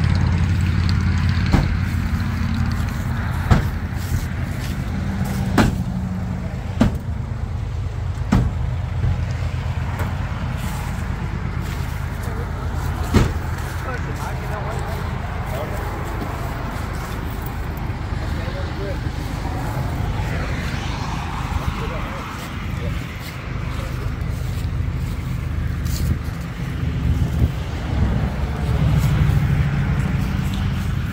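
An engine running steadily at a low pitch, with a series of sharp knocks and clunks during the first half, the loudest about thirteen seconds in.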